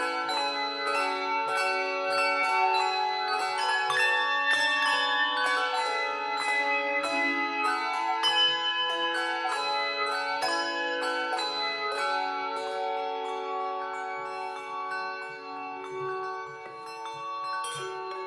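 A handbell choir playing a piece: many handbells struck in quick succession, their tones ringing on and overlapping into chords. The playing softens somewhat over the last few seconds.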